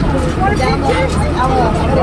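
Riders talking on a tractor-drawn wagon, over the steady low running of the tractor's engine.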